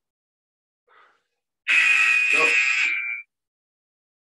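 Electronic workout interval-timer buzzer sounding once, a steady buzzing tone lasting about a second and a half, marking the end of a timed round.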